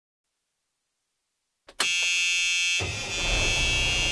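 Silence, then about 1.7 seconds in a steady, buzzy electronic tone starts abruptly as the song's intro. About a second later a low rumble joins it.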